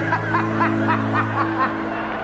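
A man's rapid, high-pitched laughter, a string of quick "ha" bursts that stops shortly before the end, over a steady droning music bed.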